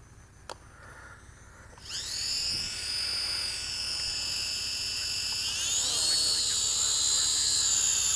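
Syma X5HW quadcopter's small motors and propellers spinning up about two seconds in, a steady high-pitched whine. The whine rises in pitch about six seconds in as the drone lifts off and climbs into a hover.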